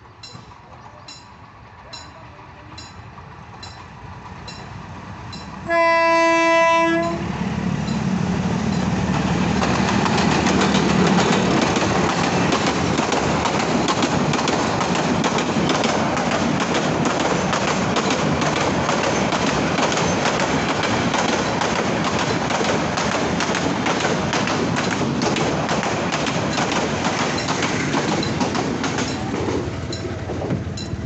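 A passenger train approaching, growing louder, then one loud steady horn blast lasting about a second, about six seconds in. The train then passes close by with loud rumble and clattering of its wheels on the rails for over twenty seconds.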